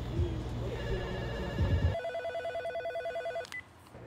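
Mobile phone ringtone ringing as a rapid electronic trill, loud from about two seconds in. It cuts off suddenly about three and a half seconds in, followed by a short beep.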